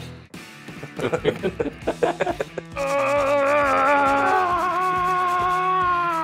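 A carrot being shredded hard and fast on a metal box grater in rough, quick scraping strokes. About three seconds in, a long held musical note comes in over the grating.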